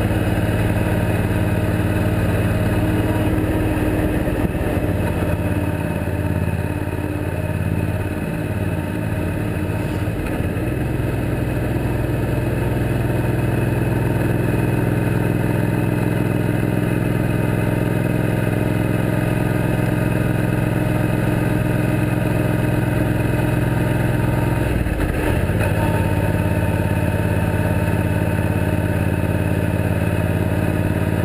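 Suzuki Boulevard C90T motorcycle engine running at highway cruising speed, heard from on the bike. A little way in, the engine note sinks and wavers as the bike slows, then settles back to a steady drone. Near the end the note breaks off briefly and picks up again.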